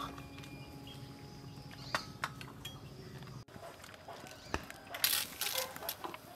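Metal ladle clinking a couple of times against a steel pot, then soup splashing as it is poured into a ceramic bowl near the end, over a faint steady tone that stops about halfway.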